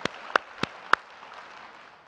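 A man clapping close to a lapel microphone, about three sharp claps a second that stop about a second in, over audience applause that fades away.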